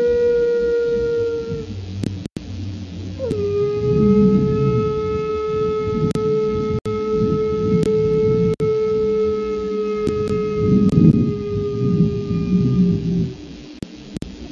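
A dog howling in long, steady, held notes. One howl ends about a second and a half in. A second begins about three seconds in with a brief rise and is held for about ten seconds.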